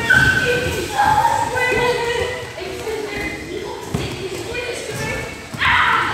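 Children's voices calling and shouting, mixed with dull thuds of feet running and landing on padded floor mats, and a loud shout near the end.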